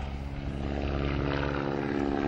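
Boeing Stearman biplane's radial engine and propeller droning steadily in flight during an aerobatic routine, growing a little louder about half a second in.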